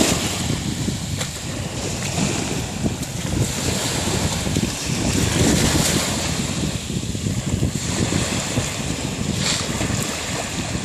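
Small sea waves washing in and draining back over a gravelly beach, with wind buffeting the microphone.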